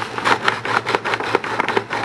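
A sheet of paper rustling and crinkling in irregular crackles as it is slid and lifted under a 3D printer's nozzle, the paper test for the nozzle-to-bed gap while levelling the bed. A low steady hum runs underneath.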